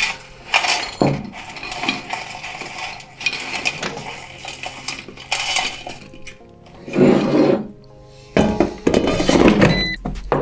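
Fries clattering out of a Rosenstein & Söhne air fryer basket onto a ceramic plate as the basket is tipped, a run of light clinks and rattles. Background music plays underneath.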